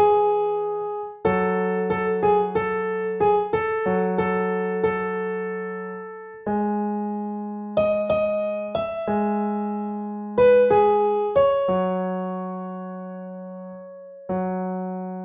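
Piano playing a slow, simple arrangement: single held bass notes under a one-note-at-a-time melody, each note struck cleanly and left to fade.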